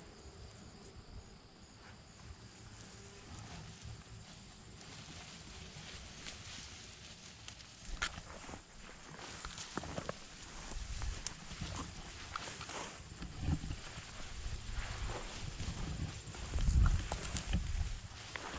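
Rustling and crunching of tall weeds and dry thistles as a dog and a person on foot push through overgrown vegetation. It is quiet at first and grows busier from about halfway, with a few low thumps near the end.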